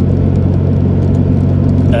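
Steady low drone of a car's engine and tyre noise, heard from inside the cabin while driving along at an even pace.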